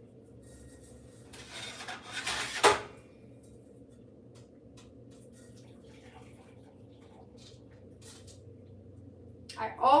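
Metal pot and strainer clattering at the stovetop, ending in a sharp clank a little under three seconds in. Then come faint small sounds as herbal liquid is poured from the saucepan through the strainer into a measuring cup.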